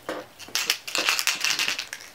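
Crackling, crinkling rustle of packaging or a cosmetics bottle being handled, a dense irregular run of crackles starting about half a second in.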